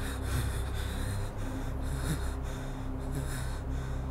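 A man gasping and breathing hard in short, repeated breaths, with two brief strained vocal sounds, over a steady low hum.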